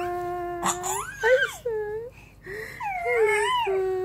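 Baby vocalising with drawn-out, wavering cooing and squealing calls: one long held note, then a few rising glides and a longer wobbling call. A sharp knock comes about 0.7 s in.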